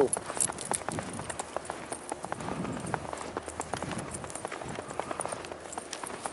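Footsteps crunching through fresh snow, an irregular run of short crunches several times a second.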